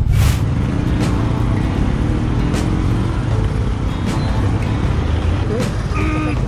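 Steady low rumble of a motorcycle riding in traffic, with wind on the rider's camera microphone. There is a brief burst of noise just after the start, and people's voices come in near the end.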